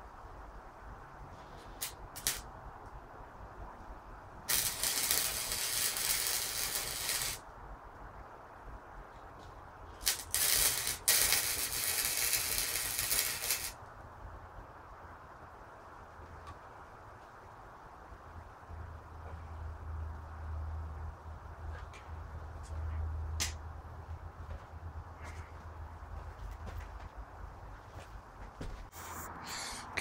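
Two bursts of hissing spray, each about three seconds long and a few seconds apart, with scattered clicks and a low hum in the second half.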